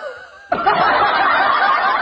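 Laughter from many voices, starting about half a second in and cutting off suddenly, like an edited-in laugh track. A brief wavering voice sound fades away just before it.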